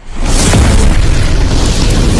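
Explosion sound effect for an animated logo intro: a loud boom that comes in suddenly and carries on as a dense, rumbling wash of noise.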